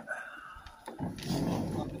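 A person's loud voice without clear words, a short burst about a second in.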